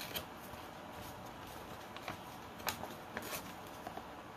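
Faint handling of construction paper: a few brief crackles and rustles spread over a quiet room.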